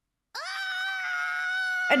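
A cartoon character's high-pitched scream: one long held 'aaaa' on a steady pitch, starting suddenly about a third of a second in.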